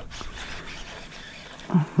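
Low, steady background hiss with no distinct event, then a man's voice starting near the end.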